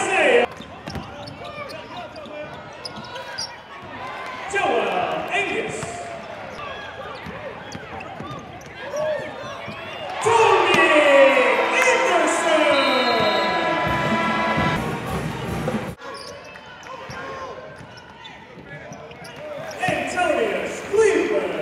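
Basketball game sound in an arena: a ball bouncing on the hardwood court amid players' and spectators' voices. The voices swell louder for a few seconds about ten seconds in.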